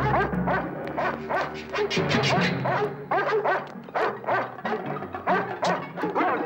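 Dogs barking in a rapid, continuous series, several barks a second, over dramatic orchestral music.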